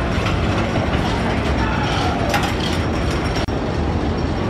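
Wooden roller coaster's PTC train running along its wooden track: a steady rumble with a few sharp clacks, the clearest about two seconds in.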